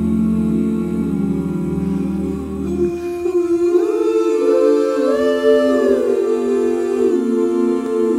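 Male a cappella chorus singing wordless sustained chords, hummed with rounded lips. About three seconds in the low bass drops out, and the upper voices slide together to a higher chord before settling into a new one.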